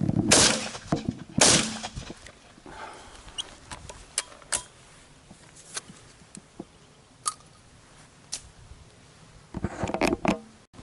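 Two shotgun shots about a second apart, fired at a flying bird, followed by a scattering of light, sharp clicks and knocks.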